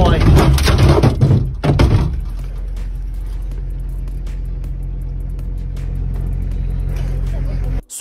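A car's engine running steadily, heard from inside the cabin, with loud thumps and rattling in the first two seconds as a young bull butts against the car's body. The hum cuts off just before the end.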